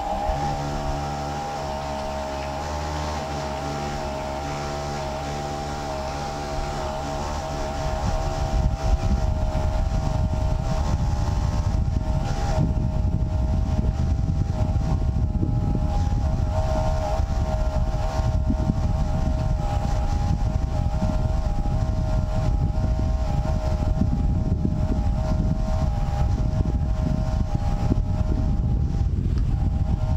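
Will-Burt Night Scan roof-mounted light tower's mast extending, its air compressor running with a steady whine. About eight seconds in, a louder, even rumble joins it and holds steady as the mast keeps rising.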